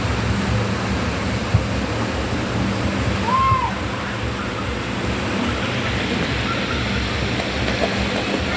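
Steady rush of flowing water in a water-park lazy river channel, over a steady low hum. A single sharp knock comes about a second and a half in, and a brief high call about three and a half seconds in.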